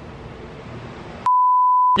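A single steady electronic bleep, one pure pitch lasting under a second, edited into the soundtrack with all other sound muted beneath it; it comes about a second in, after faint room tone.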